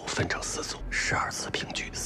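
Movie dialogue spoken in Mandarin Chinese: a short rule-giving exchange at a card table.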